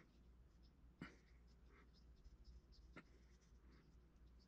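Near silence with faint scratching and handling sounds of fingers working a small clay feather on a wire armature, with two soft clicks, about one second in and about three seconds in.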